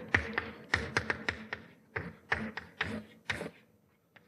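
Chalk writing on a chalkboard: a quick run of sharp taps, one for each stroke of the formula being written.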